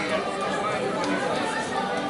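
Crowd chatter: many people talking at once, a steady jumble of overlapping voices with no one voice standing out.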